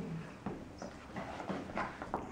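A few soft, irregular shoe scuffs and steps on a wooden dance floor as a couple turns.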